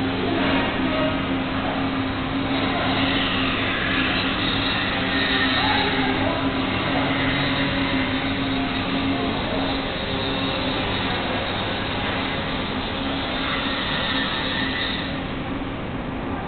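Sleeve sealer and shrink tunnel packaging machinery running: a steady rushing noise with a constant low hum.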